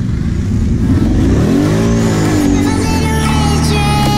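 ATV engine running and revving, with a rise and fall in pitch just under halfway through. Music fades in over the engine during the second half.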